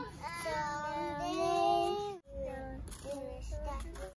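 A child singing in long held notes that glide up and down, broken by a short gap about halfway through, with a low rumble underneath.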